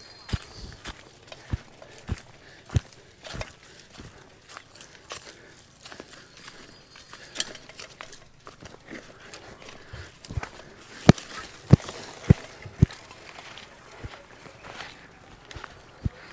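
A bicycle jolting along a rough dirt track, its frame and parts giving irregular knocks and clatter, with a run of louder knocks about eleven to thirteen seconds in.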